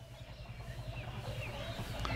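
Faint outdoor background: a few short, distant bird chirps over a low, steady hum.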